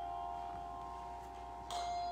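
Handbells ringing: held bell tones fade slowly, then a new chord is struck near the end.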